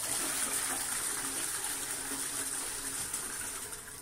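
Shires Sorrento toilet flushing: water rushing steadily through the bowl, fading near the end.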